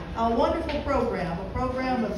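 Speech only: a woman talking into a microphone.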